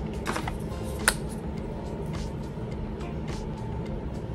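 Soft background music, with a few faint clicks from handling.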